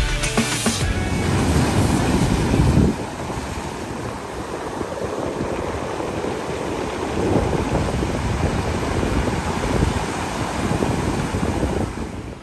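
Surf washing in over a rocky, pebbly shore, with wind buffeting the microphone, heaviest in the first few seconds. Background music cuts out about a second in.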